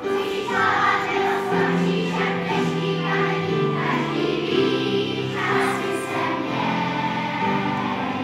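A large children's school choir singing a song together in unison, moving from note to note with held, sustained notes.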